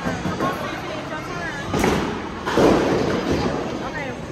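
Bowling alley clatter: a sharp knock about two seconds in, then a longer crash, typical of a bowling ball striking the pins, with voices and faint background music.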